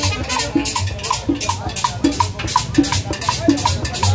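Live band playing Latin dance music, carried by a steady percussion pattern of short pitched drum hits, about three a second and alternating high and low, over an upright bass line.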